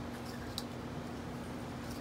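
Quiet room tone with a steady low hum, and two faint light clicks, about half a second in and near the end, from small craft supplies being handled on a worktable.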